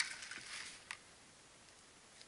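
Plastic power banks being handled: a sharp click at the start, a faint rustle, and a second light click about a second in.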